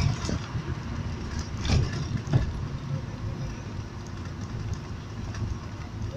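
Road and engine noise inside a moving car: a steady low rumble, with two louder thumps about two seconds in.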